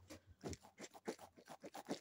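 A soft squishy toy being squeezed and worked in the hand close to the microphone: a faint run of small squelching, crackling clicks, about five a second.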